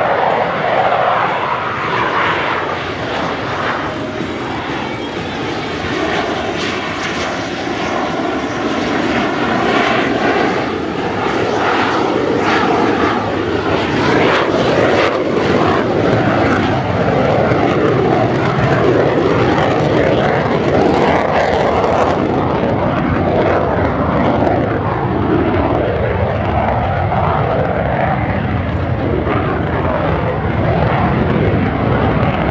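A Royal Danish Air Force F-16AM Fighting Falcon's single jet engine, loud and continuous through a display manoeuvre. Its tone sweeps and phases as the jet passes, with some crackle in the middle.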